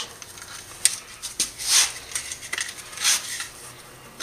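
Heavyweight insulating slot paper being pushed and rubbed into the slots of a steel motor stator: a handful of short scraping and rustling sounds.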